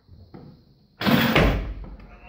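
A loaded barbell being cleaned: about a second in, a sudden loud clash as the bar is caught on the chest, with the plates rattling on the bar and a heavy low thump as the lifter drops into the squat, fading over the next second.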